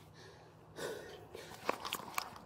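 Faint rustling and scraping of clothing against a body-worn camera, with a few sharp clicks late on.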